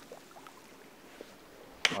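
Faint, quiet river-bank ambience with a low hiss of shallow flowing water, broken near the end by one sharp click.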